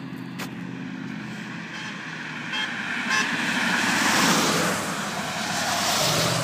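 A road vehicle driving past on a wet street: a steady engine hum, a few short horn toots about two to three seconds in, then tyre hiss swelling to its loudest about four seconds in as it goes by.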